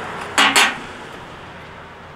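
Noise of a vehicle passing on a nearby road, slowly fading. Two short, sharp sounds come about half a second in.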